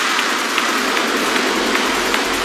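Dark psytrance breakdown: the kick drum and bassline drop out, leaving a dense, steady hissing noise wash with a few faint scattered clicks.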